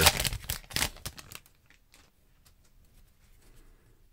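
Foil wrapper of a 2022 Panini Contenders Football trading-card pack tearing open and crinkling for about a second and a half, then only faint light rustles as the cards are handled.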